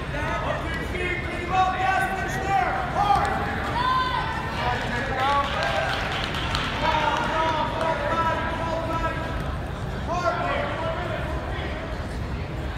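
Several voices of coaches and spectators shouting, overlapping and indistinct, urging on wrestlers.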